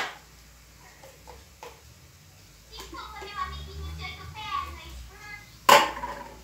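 A small plastic slime pot being opened and handled, with a few faint clicks early on. Indistinct background voices follow, and a short loud handling noise comes near the end as the slime comes out.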